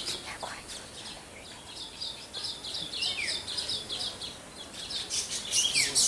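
Small birds chirping, a steady run of short high notes several times a second with an occasional falling whistle, turning into a quicker, sharper burst of chirps near the end.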